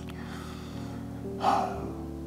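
Quiet background music holding steady low notes, with one short breathy vocal sound, like a gasp or quick exhale, from a man about one and a half seconds in.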